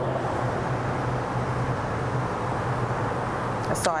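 Steady background room noise: a constant low hum under an even hiss, with no distinct events.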